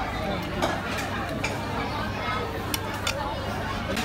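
Busy restaurant din: indistinct chatter of diners over a steady background noise, with a few sharp clinks of tableware.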